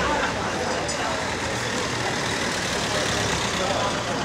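A car driving past on the street, with people talking in the background.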